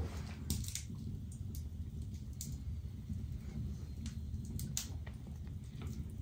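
Quiet handling sounds of hand-stitching leather: needles pushed through the holes and thread drawn through, with scattered small clicks and rustles over a low steady hum.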